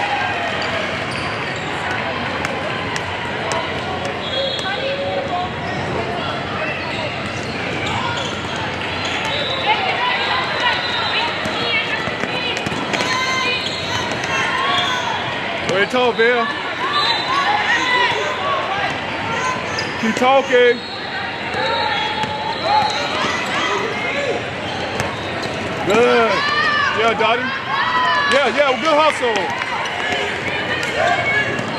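Basketball bouncing on a hardwood court, with players' shoes squeaking at times, over steady crowd and bench chatter in a large hall.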